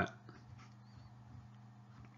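Near silence in a pause of speech: faint steady low electrical hum of the recording, with one very faint brief high squeak about half a second in.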